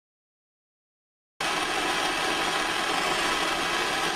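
Silence, then about a second and a half in a steady hiss from a hand-held MAP gas torch flame cuts in suddenly and holds evenly.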